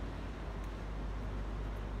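Steady low hum with a faint even hiss, the background sound of an underground parking garage.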